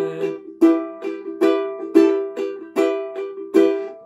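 Ukulele strummed in a steady rhythm, each chord ringing on between strokes, with a held sung note trailing off in the first moment.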